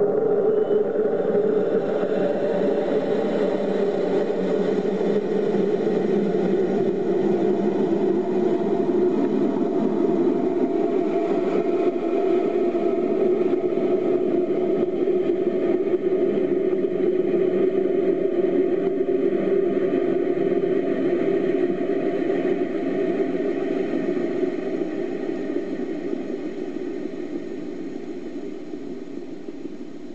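A rocket motor firing, heard from a camera mounted on the rocket: the noise starts suddenly at ignition and liftoff, runs loud and steady through the climb, then fades gradually over the last several seconds.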